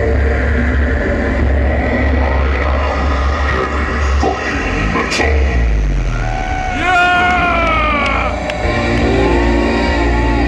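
Concert PA playing the band's recorded intro music: a heavy low drone throughout, with a sudden sharp sound about five seconds in and a cluster of pitched tones gliding downward around seven seconds. A held chord comes in near the end.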